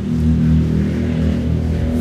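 A steady low drone with no change in pitch, held through a pause in the talking.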